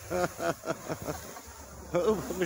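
Laughter in the first second over the steady hiss of a Winda "Snow Cone" handheld firework fountain spraying sparks.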